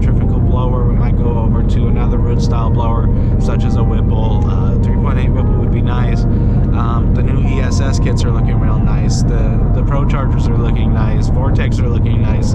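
A man talking inside the cabin of a Roush-supercharged, cammed S550 Ford Mustang V8, over the steady low drone of the engine and road noise at an even freeway cruise.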